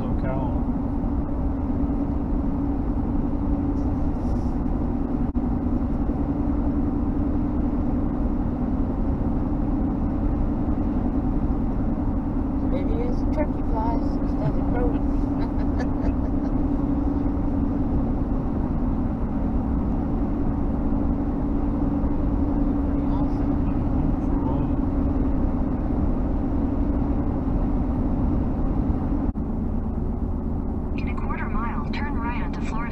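Steady drone of a car cruising on an open two-lane highway, heard from inside the cabin: tyre and engine noise with a constant low hum.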